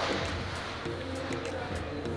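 Background music with the murmur of other diners' voices in a busy eating area.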